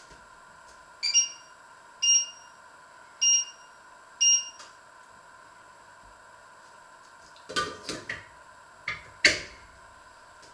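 Four short electronic beeps, each a single high tone, about a second apart. Near the end come a few light knocks and clinks, as of china being handled.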